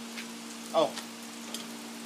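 A man's short "oh" just before a second in, over a steady low hum and a faint even hiss.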